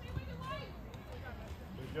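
Scattered voices calling out across an outdoor soccer field over a steady low background rumble, with a man starting to say "good" right at the end.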